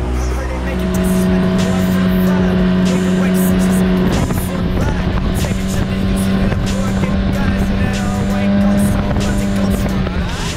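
Arctic Cat Wildcat Trail UTV's 700 cc twin-cylinder engine droning at a steady speed as the side-by-side drives along a dirt trail, with road noise from the knobby tyres on dirt and gravel.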